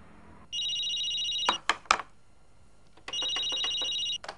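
Electronic desk telephone ringing: two trilling rings about a second long, with a pause between them. Several sharp clicks, louder than the ring, come just after the first ring and again during the second.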